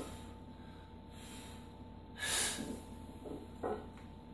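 A weightlifter's sharp, forceful breath about two seconds in, with a shorter breath near the end: the bracing breath a lifter takes under a heavy barbell before descending into a squat.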